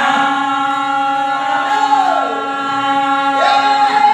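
Men singing in a Telugu folk style. One voice holds a long steady note while another voice slides down in pitch about two seconds in and back up near the end.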